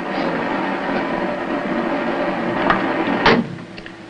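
Submarine periscope being run up by its hoist: a steady mechanical hum with several held tones. Two short clicks come near the end, and the hum drops away about three and a half seconds in.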